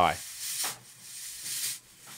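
Fog machine hissing as it jets out fog, in two short bursts: one about half a second in and another about a second and a half in.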